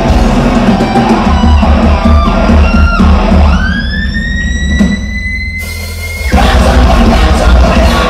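Thrash metal band playing live in a hall: distorted guitars, bass and drums. About three seconds in, a single high note slides upward and is held for nearly three seconds over the drums, and then the full band comes back in around six seconds.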